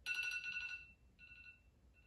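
Smartphone alarm ringtone going off: a bright, high electronic tone that sounds for nearly a second, then comes back twice more in shorter bursts.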